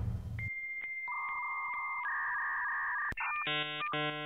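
Edited-in electronic beeps. A steady high beep comes first, then two lower steady tones, one after the other. A sharp click follows about three seconds in, then two short buzzy chord-like tones near the end, as the tail of rock music dies away at the start.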